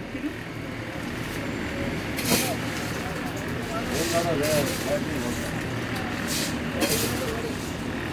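Shop ambience: a steady low hum with faint voices in the background and a few short rustling noises.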